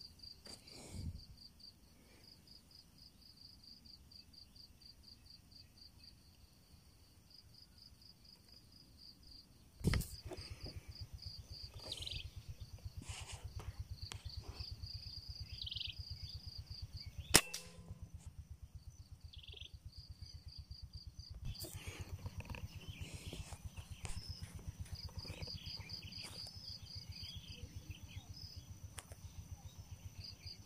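A single sharp crack of a PCP air rifle firing a 5.52 mm pellet a little past halfway through. Crickets chirp in a rapid, even pulse throughout, and there is a smaller knock about ten seconds in.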